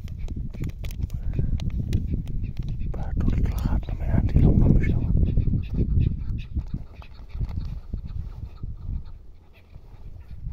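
Chukar partridges calling among the rocks, over a steady low rumble, with scattered short clicks.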